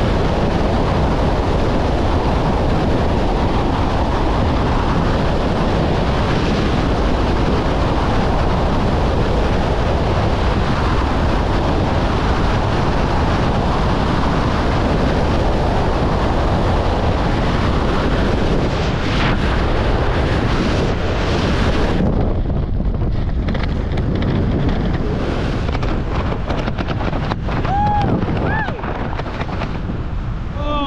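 Freefall wind rushing loudly and steadily over a skydiver's helmet-mounted camera microphone. About three-quarters of the way through it suddenly thins out and gets lighter, consistent with the fall slowing as the parachute opens.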